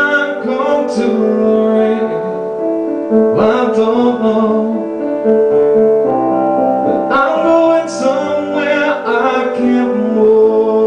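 Roland RD-700SX digital stage piano playing held chords, with a man singing phrases over it into a microphone: near the start, about three seconds in, and again about seven seconds in.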